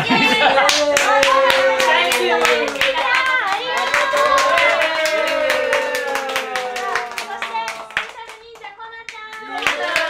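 Rhythmic hand clapping by several people, a few claps a second, with women's high voices chanting in a sing-song along with it. The clapping and voices ease off briefly about eight seconds in, then pick up again near the end.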